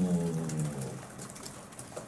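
A man's low, drawn-out vowel held at the end of a phrase, falling slightly and trailing off within the first second, a filled pause mid-sentence; then a quiet pause with room tone.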